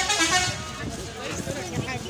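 Busy street-market ambience: people talking and calling out close by over passing traffic, with a short vehicle horn toot right at the start.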